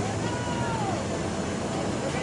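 Steady hum and rush of airport ground machinery, with a short high squeal that bends up and then falls away in the first second.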